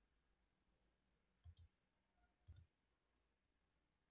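Near silence with two faint computer mouse clicks about a second apart, each a quick double tick of press and release.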